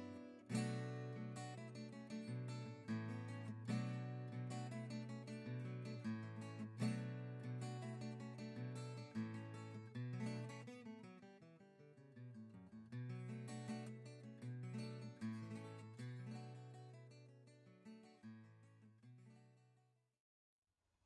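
Background music: plucked and strummed acoustic guitar, fading out toward the end.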